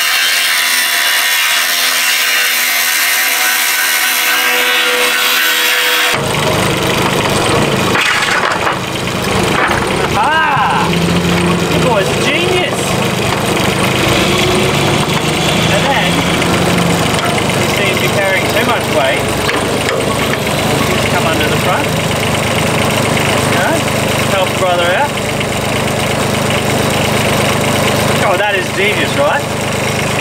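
An angle grinder grinding steel for about six seconds, taking off protruding metal so an attachment will sit flat. It then gives way suddenly to a UHI UME15 mini excavator's engine running steadily while the machine works.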